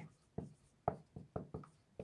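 Dry-erase marker writing on a whiteboard: a quick series of about six short, faint strokes as a word is written.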